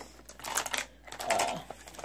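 Pens, scissors and tape rolls clicking and rattling against each other in a plastic storage case as a hand rummages through them, in two short bouts of clatter.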